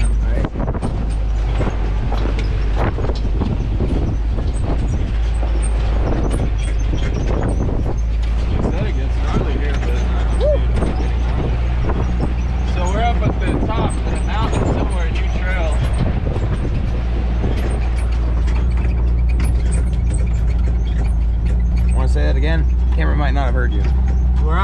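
Off-road vehicle engine running low and steady, heard inside the cabin while driving slowly over a rough dirt trail, with constant knocks and rattles from the body and suspension, and faint voices in the middle.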